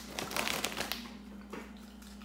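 Crunchy kettle-cooked potato chips being chewed loudly, with a run of sharp crunches in the first second that thin out afterwards. The chip bag crinkles as it is handled.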